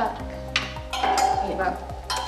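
Clothes hangers clinking and scraping on a clothing rail as a garment is lifted down, several short sharp clinks, over steady background music.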